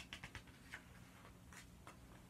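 Faint paper rustling and a few soft ticks as a picture-book page is lifted and turned by hand.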